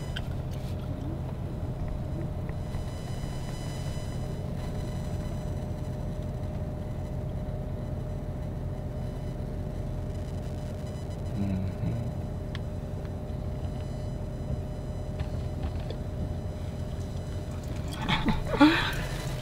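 Steady low hum and rumble inside a stationary car's cabin, with faint steady tones over it.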